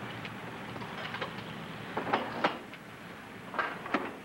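A Coca-Cola bottle vending machine being worked by hand, giving a series of mechanical clicks and clanks. A few light clicks come about a second in, the loudest clanks about two seconds in, and two more just before the end.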